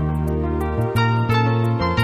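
Instrumental background music led by a keyboard, with low bass notes that change about once a second and a light ticking beat.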